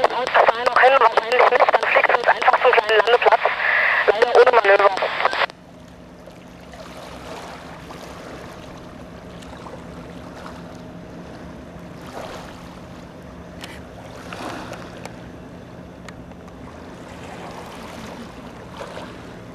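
A man's voice speaking German over a two-way radio, thin and narrow-sounding, cuts off abruptly about five seconds in. Then comes quiet lakeside ambience with a faint steady hum from a distant motorboat.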